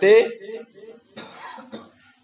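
A man's last spoken syllable trailing off, then a brief cough about a second in.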